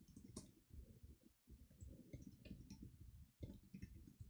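Computer keyboard typing: a fast, irregular run of faint key clicks.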